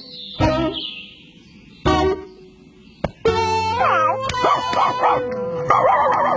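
A cartoon dog barks twice, about half a second and two seconds in, then background music plays from about three seconds in.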